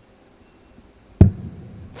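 A steel-tip dart striking a bristle dartboard: one sharp thud a little over a second in.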